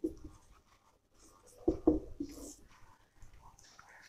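Marker pen writing on a whiteboard, faint short strokes, with a few soft knocks about two seconds in.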